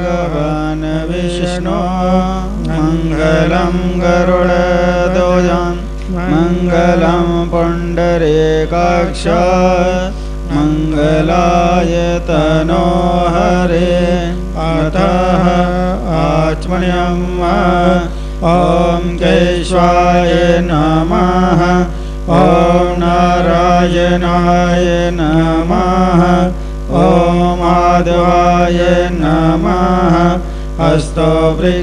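A voice chanting a Hindu mantra as a sung melody in phrases of a few seconds with short breaks between them, over a steady low drone.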